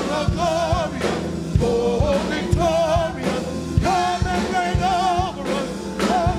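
Gospel praise team singing together, voices held with vibrato, over a steady drum beat.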